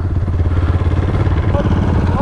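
Single-cylinder off-road engines idling steadily with an even putter, dirt bikes and quads warming up before a ride.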